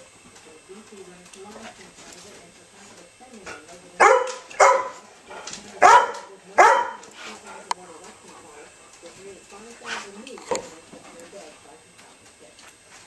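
A dog barking during play: two quick pairs of loud barks, about four seconds in and again about six seconds in, then two fainter barks near the end.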